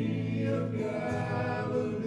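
Men's gospel vocal quartet singing sustained notes in harmony into microphones.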